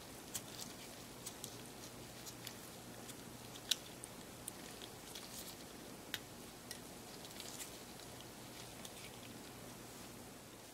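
Faint handling noise of gloved fingers working a small wire harness free of a camera's plastic top cover and mode dial: scattered light clicks and ticks of plastic and wire, the sharpest a little over a third of the way in.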